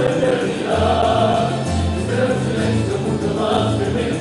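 A tuna, a student minstrel group of men, singing in chorus to strummed classical guitars and bandurrias, with deep bass notes held under the voices.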